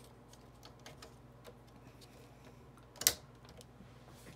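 Small plastic clicks of a blade holder being handled and fitted into a Silhouette Cameo 4's tool carriage, with one sharp click about three seconds in.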